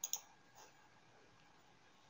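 Two quick, sharp clicks close together right at the start, a faint tap about half a second later, then near silence.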